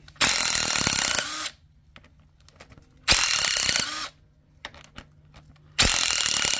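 Mac impact wrench zipping cylinder head bolts out of a flathead V8 block: three bursts of about a second each, the last starting just before the end, with light clicks between.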